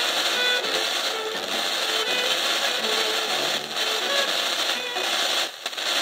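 Music from a distant FM station picked up by E-skip, played through a small receiver's speaker under a steady static hiss from the weak signal.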